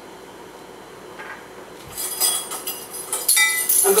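Metal teaspoon and glass canning jars clinking as salt is spooned into the jars. The run of quick, bright clinks starts about halfway through.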